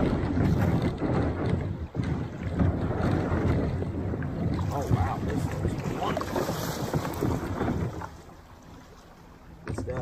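Rushing river water and wind buffeting the microphone as a kayak rides through choppy current. The noise drops away sharply about eight seconds in.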